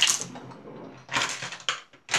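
Hair being gathered and twisted up by hand close to the microphone, rustling in a few short bursts, the strongest right at the start.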